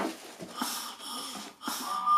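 A person blowing twice through a shower pump's flow switch to push air past it and trip it, two breathy puffs. Right at the end a steady motor whine starts as the pumps switch on.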